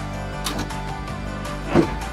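Background music with steady held notes, and one brief loud sound near the end.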